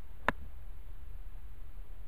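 A golf club striking a ball once on a chip shot from turf: a single sharp click a third of a second in.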